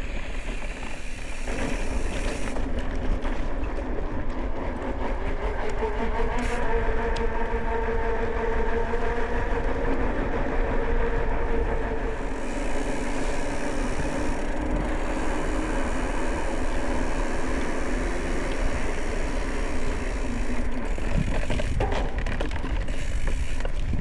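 Ride noise from a mountain bike: wind on the microphone and the rolling of the tyres, with a steady hum through the middle stretch.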